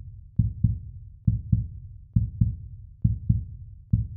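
Heartbeat sound effect: pairs of low, dull thumps in a lub-dub rhythm, repeating evenly a little faster than once a second.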